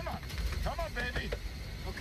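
Faint film dialogue from a movie trailer, leaking from headphones into the microphone, over a low steady rumble.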